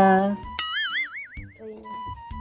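A cartoon 'boing' sound effect: a springy tone whose pitch wobbles up and down for about a second, starting sharply just after a drawn-out spoken word ends. Light musical tones follow near the end.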